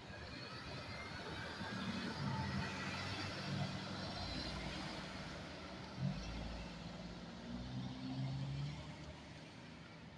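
A car driving past close by: engine hum and tyre noise on the road building up, holding, and fading away, with a brief sharp thump about six seconds in.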